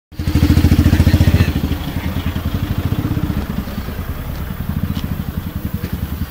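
A vehicle engine running close by with a fast, even throb, loudest in the first second and a half and then settling a little lower.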